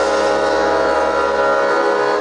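Live band music: a steady chord of held notes sustained as a drone, from accordion and upright double bass, with no drum hits.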